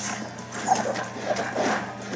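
Video-game fight sound clips, short cries and hits, over background music.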